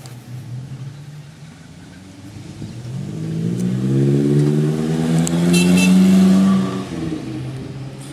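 A car engine idles, then revs up steadily over a few seconds and is held high before dropping back to idle near the end.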